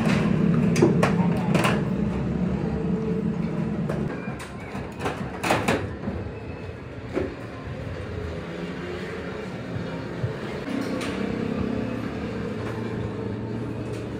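Workshop sounds: a low rumble that eases off about four seconds in, under background voices. Scattered sharp metal clicks and taps come from sewing machine head parts being handled and fitted, with a small cluster about five to six seconds in.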